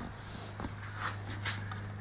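Quiet handling noise: a couple of faint clicks as hands work at a power seat's wiring connectors and plastic parts, over a steady low hum.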